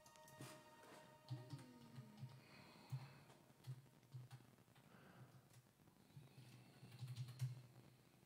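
The last notes of a digital piano dying away, then near silence broken by faint scattered clicks and soft low knocks.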